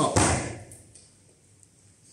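A grappler swept onto a foam training mat: a short thud with a rustle of gi fabric about a tenth of a second in, dying away within about half a second.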